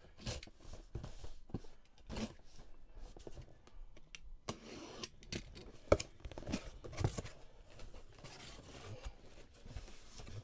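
A cardboard box being handled and opened: irregular rubbing, scraping and tearing of cardboard and tape, with scattered knocks. The loudest knock comes a little before six seconds in, after a brief quiet spell.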